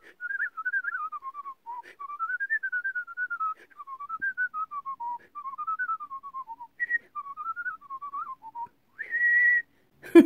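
A woman whistling a tune through pursed lips: quick notes stepping up and down in short phrases with a few brief breaks, ending on one longer, higher note near the end.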